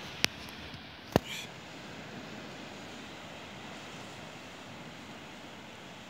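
Two sharp clicks about a second apart, close to the microphone, then a steady low hiss.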